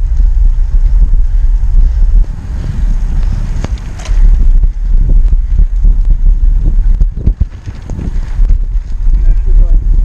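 Wind buffeting the microphone of an action camera mounted on a moving bicycle: a loud, gusty rumble that eases twice for a second or two.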